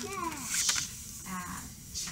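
Soft, low-level talk from a child and an adult, with a short paper rustle about half a second in as a flash card is handled and laid on the tabletop.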